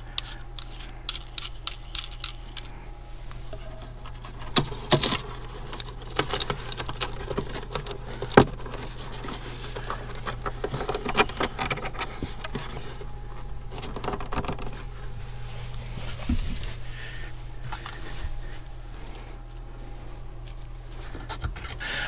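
Scattered clicks, scrapes and rattles of hands test-fitting small plastic power outlets into drilled holes in a wooden cabinet, with a few sharper clicks, over a low steady hum.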